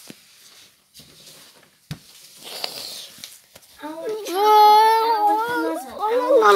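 A child singing wordlessly in long, wavering notes, starting about four seconds in. Before that there are only a few faint clicks.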